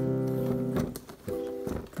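Casio Privia PX-S1000 digital piano playing chords on its grand piano tone: a held chord that dies away a little under a second in, then a second, shorter chord.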